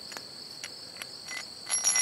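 Light metallic clinks of a steel bolt and washers being handled, a few single ticks and then a louder jingling cluster near the end, over a steady chorus of crickets.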